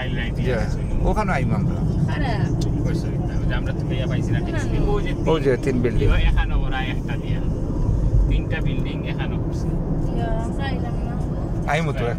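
Steady low road and engine rumble inside a moving car's cabin, with bits of talking over it.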